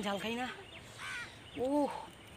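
People's voices in three short sounds without clear words, the last a rising-and-falling call near the end.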